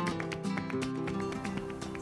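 Background music: acoustic guitar in a flamenco style, with rapid plucked notes.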